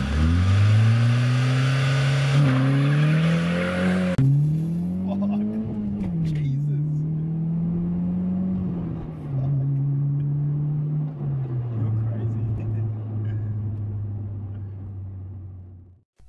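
Car engine revving up, its pitch climbing with a few sudden drops like gear changes, then holding, stepping lower and fading near the end.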